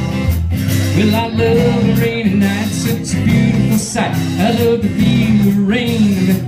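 Live band playing a country song, with a strummed acoustic guitar and an electric guitar.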